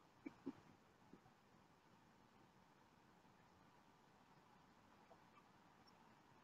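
Near silence: faint room hiss with a few soft clicks about half a second and a second in.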